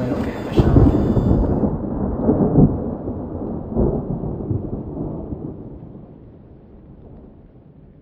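Thunderstorm sound effect: low rolling thunder over rain. It swells a few times, turns duller after the first second or two, and fades out steadily toward the end.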